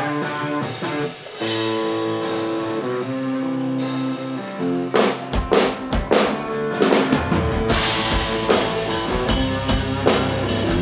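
Live indie rock band playing: electric guitar notes ring out alone at first, then drums and bass come in about halfway through and the full band plays on.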